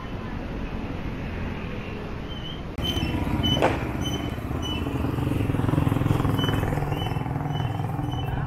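Street traffic outside a market, with motorcycle engines running. The sound gets louder about three seconds in, and a low engine note swells a few seconds later as a motorcycle passes close by.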